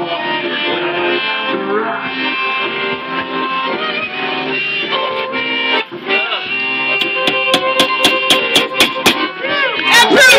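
Live instrumental music: a flute playing over sustained reedy chords. In the last few seconds a quick run of sharp clicks sounds over it.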